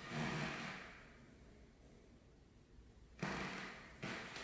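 Quiet empty room with soft, dull footsteps on a hardwood floor: one fades out in the first second, and another starts sharply about three seconds in.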